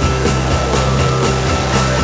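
Rock music with a steady beat and a bass line.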